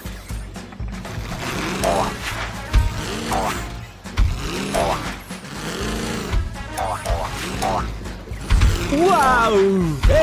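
Cartoon soundtrack music with swooping, gliding notes, punctuated by a few sharp low thumps. It grows louder and busier near the end.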